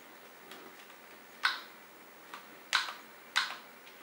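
Buttons on a LEGO Mindstorms EV3 brick being pressed, giving about five short, sharp clicks at uneven intervals, the clearest in the second half.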